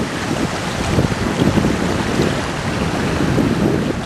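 Wind buffeting the microphone of a handheld camera in gusts, a loud, uneven rumble.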